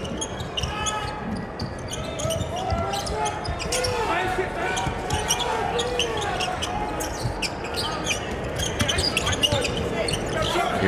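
Court sound from a live basketball game: a ball being dribbled on a hardwood floor with short, sharp knocks throughout, and players and coaches calling out. The sound carries in a large, nearly empty arena.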